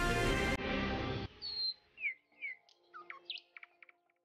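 A music sting that stops about a second in, then a handful of short bird chirps, each a quick glide up or down in pitch.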